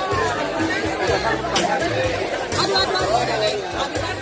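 Music with a steady bass beat under a close crowd talking and chattering over one another.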